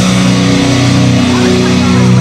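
Live rock band: electric guitar and bass holding a loud, sustained chord with little drumming.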